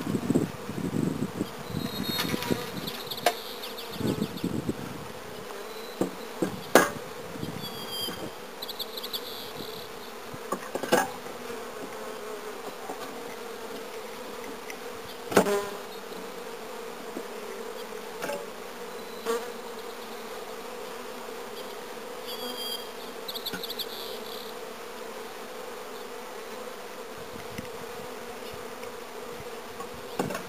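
Honeybees buzzing steadily in a cloud around an open hive, with a few sharp knocks as the wooden hive cover and boxes are handled.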